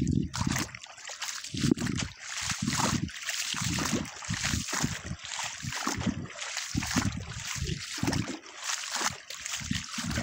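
Floodwater splashing and sloshing around someone wading through it, in uneven surges with each stride.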